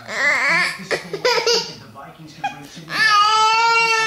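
A toddler crying out after being told no: short wavering cries in the first second and a half, then one long, high-pitched wail starting about three seconds in.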